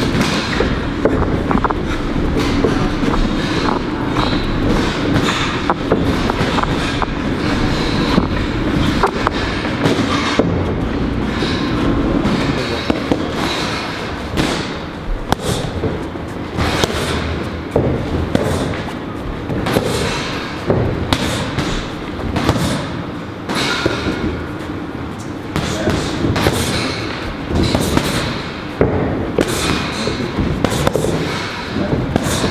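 Boxing gloves hitting focus mitts in fast combinations, a quick run of sharp slaps through the second half. Before that come fainter knocks of footwork on the ring canvas.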